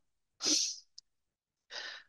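A man's breath noise through a video-call microphone: a short breath about half a second in, a faint click about a second in, and a quieter intake of breath near the end, with dead silence between them.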